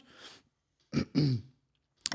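A man clears his throat with a short cough about a second in, after a soft breath.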